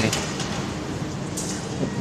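A KRL electric commuter train approaching a station platform in the distance, heard as a steady, even noise.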